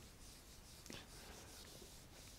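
Faint rubbing of a whiteboard eraser wiped across a whiteboard in soft, repeated strokes.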